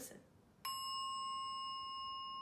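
A Montessori bell struck once with a mallet about half a second in, then left undamped. It rings on as a clear, steady tone with bright overtones, barely fading.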